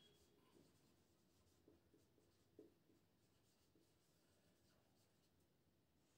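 Near silence, with faint strokes of a marker writing on a whiteboard.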